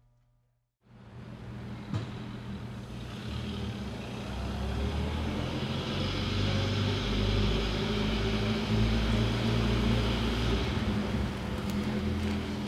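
A vintage car's engine running with a low, steady rumble that grows gradually louder, with a single click about two seconds in.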